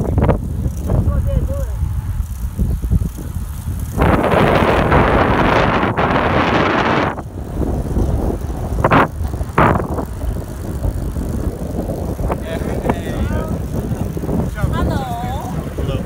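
Wind rushing over the microphone of a camera carried on a moving road bike, with a steady low rumble. About four seconds in, a louder rushing hiss lasts some three seconds and then stops abruptly.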